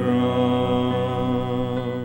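A male vocal trio holding one long sung chord in harmony, steady with a slight waver.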